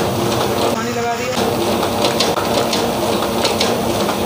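Small two-colour offset printing press running with a steady mechanical noise and a few light clicks in the second half, as the dampening water is run in before inking.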